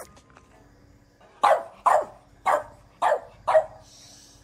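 French bulldog barking five times in quick succession, about half a second apart.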